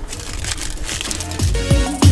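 Plastic packaging crinkling as a small air freshener is unwrapped by hand. About three-quarters of the way in, electronic music with a heavy bass beat comes in.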